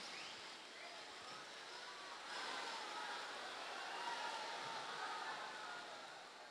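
Faint crowd murmur with scattered distant voices.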